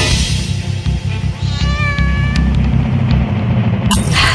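Background music with a low pulsing beat, over which an animated creature gives a short high cry about halfway through. Near the end a sudden loud whoosh comes in.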